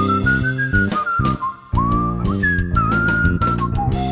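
A whistled melody with sliding notes over a backing band of guitar, bass and drums. There is a short break in the music just before the middle.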